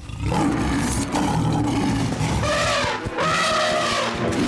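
Cartoon animal roars: a loud, low roar that starts suddenly, then two calls with bending pitch in the second half.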